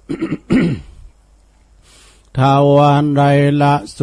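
A man coughs briefly to clear his throat near the start. After a pause of about a second and a half, he resumes a chanted verse recitation in a steady, drawn-out voice.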